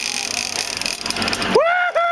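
Steady run of a boat's engine and water rushing past the hull, then, about one and a half seconds in, a loud, drawn-out whooping shout from a person, briefly broken and carrying on.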